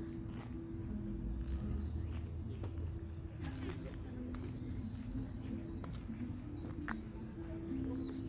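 Music of slow, held notes, with faint voices, scattered clicks and a few short high chirps.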